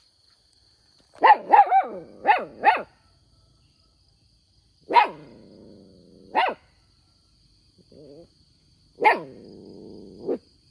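A dog barking: a quick run of about five barks, then single barks every second or few. Two of the later barks trail off into a lower sound about a second long.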